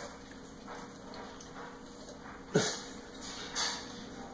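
A golden retriever making one short vocal sound that falls quickly in pitch, like a brief whine or grunt, about two and a half seconds in, with a weaker one about a second later.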